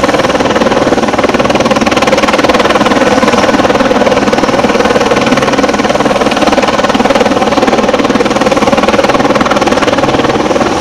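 Helicopter flying slowly low overhead: a loud, steady rotor and engine noise with a fast, even rotor chop.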